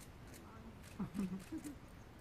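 A person's voice, a few short unclear sounds about a second in, over faint steady background noise.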